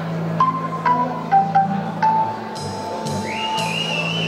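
Electric organ playing a slow instrumental passage: a held low chord under single high melody notes, each struck with a bell-like attack, and a higher note sliding up near the end.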